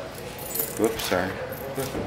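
Light metallic jingling and clinking, a few short chinks through the moment, with voices talking over it.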